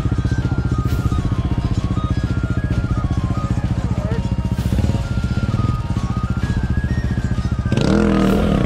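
Single-cylinder dirt bike engine idling steadily close by, with background music playing over it.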